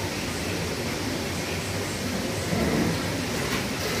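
Steady wash of noise over a low hum from aquarium equipment: filters and air bubblers running in rows of saltwater display tanks.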